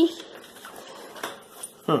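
Faint rustling and a few light clicks of play yard parts being handled, between a voice trailing off at the start and a short "hmm" near the end.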